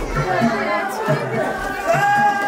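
Several people talking at once, with a steady low beat of music underneath.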